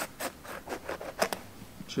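Knife cutting through the rind of a yellow passion fruit: a run of short scratchy strokes, the loudest a little past a second in, as the cap is cut free.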